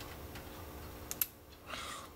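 Faint clicks of a hook pick working the pins of a brass pin-tumbler padlock under tension, with a sharper click about a second in as a pin sets, which the picker fears set two pins at once. A short scraping rustle near the end.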